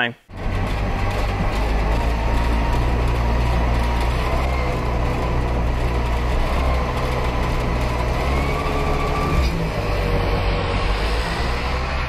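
A small car's engine running steadily as the car drives by, with a brief change in its note about nine and a half seconds in.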